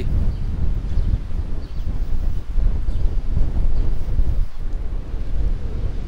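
Strong wind buffeting the camera microphone: a loud, gusty low rumble that rises and falls.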